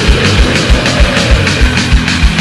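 Black/thrash metal music: a dense, loud band sound with fast kick drum beats several times a second and cymbals over it.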